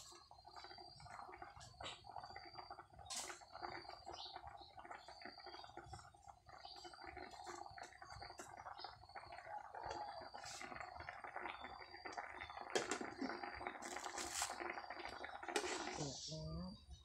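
Pot of banana-blossom curry bubbling steadily at a simmer, a soft continuous gurgle. Near the end a ladle stirs the curry and knocks against the metal pot.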